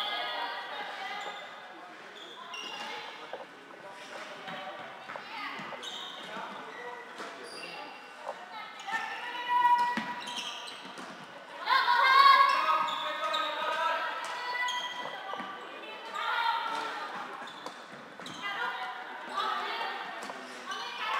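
Floorball play in a sports hall: short clacks of plastic sticks striking the light plastic ball and the floor, with players shouting calls to each other, echoing in the hall. The shouting is loudest about twelve seconds in.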